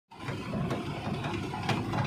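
A vehicle's engine running, heard from inside its cab as it drives over a rough dirt road, with the cab rattling and knocking twice on the bumps.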